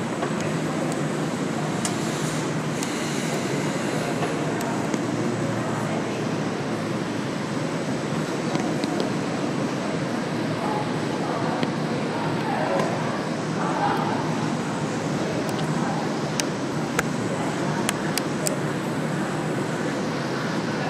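Steady low rumble of a large indoor arena, with faint indistinct voices around the middle and a few sharp ticks near the end.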